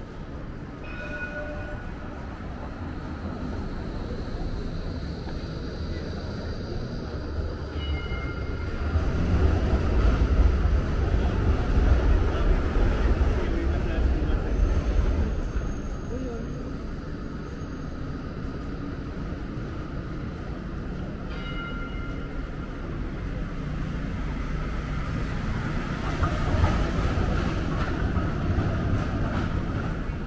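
City street with a Melbourne tram running past, its low rumble swelling loudest from about a third of the way in to the middle and again near the end, with people talking nearby.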